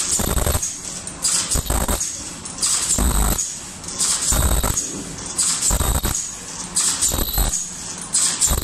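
Automatic mask-making machine's ear-loop spot-welding station cycling steadily, with a burst of mechanical noise and high hiss about every second and a half.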